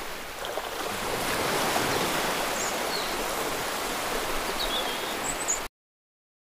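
Steady rushing noise like wind, with a few faint, short, high chirps. It cuts off abruptly near the end.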